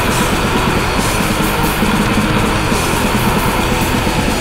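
War metal recording: loud, dense distorted electric guitars over drums, playing without a break.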